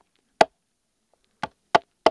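Firehawk hatchet chopping into a peeled green-wood stick laid across a log: three sharp single strikes, one soon after the start and two in quick succession near the end.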